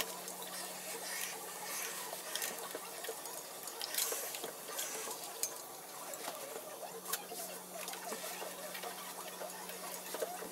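Steam iron sliding over cloth on a padded ironing board, with the garment rustling as it is handled and a few sharp clicks and knocks as the iron is set down and picked up. A steady low hum runs underneath.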